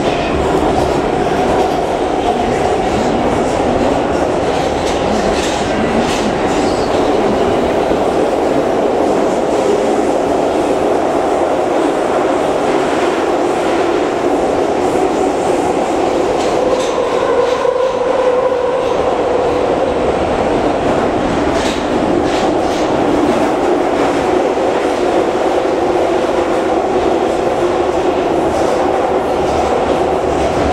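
Metrowagonmash-built metro car running at speed without stopping, heard from inside the carriage: a steady loud rumble of wheels and running gear, with a few faint clicks over the rails.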